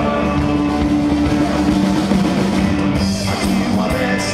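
A live band playing a rock song, with guitar.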